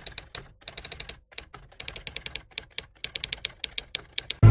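Typewriter keys clacking in quick, irregular runs of strokes with short pauses between them.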